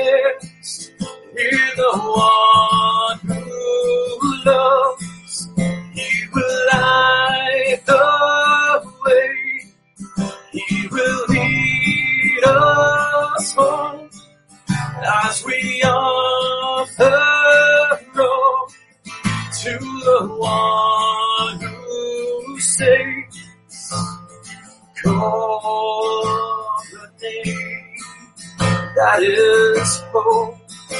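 A worship song played on a strummed acoustic guitar, with a voice singing the melody in phrases of a second or two and short breaks between them.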